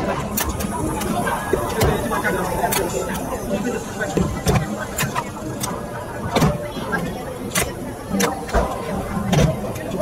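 Adjustable kettlebell being lifted out of its numbered dial base and set back down, giving irregular sharp clicks and clacks from the weight-plate mechanism. Voices murmur in the background.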